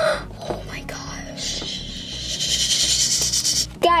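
A soft, steady rustling hiss for about two seconds in the middle, as small plastic toy figures are handled, over quiet background music.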